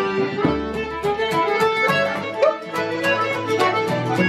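A fiddle and a piano keyboard playing a traditional tune together, the keyboard keeping a steady beat of chords under the fiddle melody.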